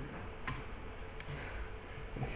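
Faint ticks over quiet room tone, with a few light clicks, the clearest about half a second in.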